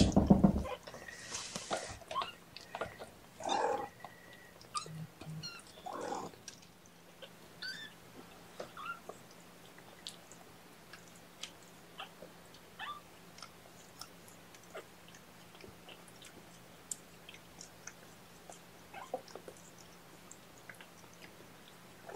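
Kitten suckling formula during hand-feeding: small wet smacking clicks scattered throughout, with a few louder rustles in the first six seconds.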